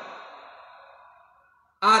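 A man's speech pausing: his last word fades out in reverberation over about a second and a half, then his voice starts again sharply near the end.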